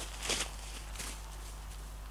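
Footsteps of a person running through long grass, a few soft footfalls with swishing grass, mostly in the first second, over a low steady rumble.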